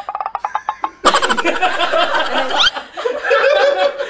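A group of people laughing together: a quick run of short laughs in the first second, then several voices laughing loudly at once from about a second in.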